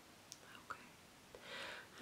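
Near silence: quiet room tone with a couple of faint mouth clicks and a soft breath in near the end.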